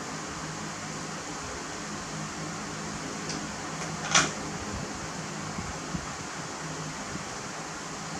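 Steady hum and hiss of a running electric fan or air conditioner, with one short, sharp noise about four seconds in.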